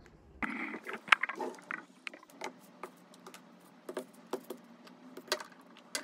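A drawer sliding open, then light clicks and clatter as makeup compacts, palettes and lipstick tubes are moved about in plastic drawer organizers. The sharpest click comes about a second in.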